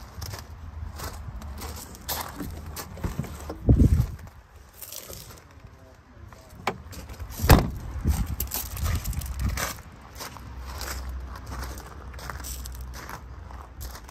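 Footsteps crunching on gravel with phone handling noise as someone walks around the vehicle, with two loud thumps, one about four seconds in and another about seven and a half seconds in.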